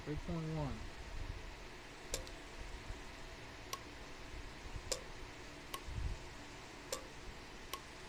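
Automotive horn relay on the bench clicking about six times at irregular intervals as its electromagnetic coil is switched on and off: the click of a working relay.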